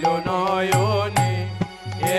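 Bengali devotional kirtan music: a voice singing a wavering melody over low, pitch-bending drum strokes and high ringing cymbal strikes, about two strokes a second.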